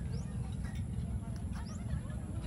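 Wind buffeting the microphone as a steady, fluttering low rumble, with faint distant voices and a few short, high rising chirps.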